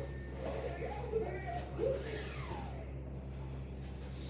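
Children's TV programme audio played through a television's speaker: a voice vocalising without clear words, with sliding tones that fall in pitch in the middle, over a steady low hum.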